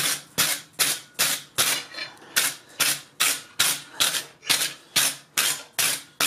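A rounding hammer striking a small forged iron hand on the anvil in a steady rhythm, about fifteen ringing blows at roughly two and a half a second, shaping the fingers.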